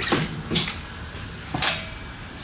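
Three short knocks and scrapes of metal clamp parts and an Allen key being handled on a dirt bike's fork tube. The first, at the very start, is the loudest; another comes about half a second in and the last near the end.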